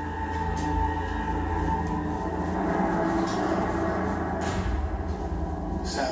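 Television drama soundtrack: a steady low rumble under sustained, ominous-sounding held tones of background score.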